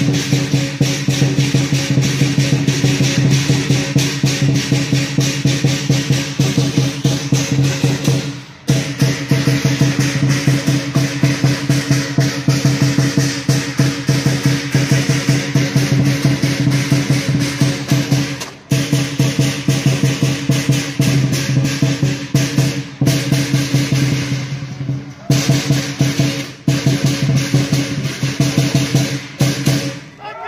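Chinese lion dance percussion playing a fast, driving beat: a large lion dance drum with crash cymbals and gong. It breaks off briefly about 8 and 18 seconds in, with a few shorter breaks near the end.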